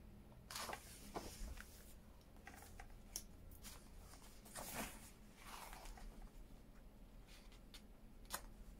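Faint rustle of paper pages being turned by hand in a book, a few soft swishes, the clearest about half a second in and near five seconds in.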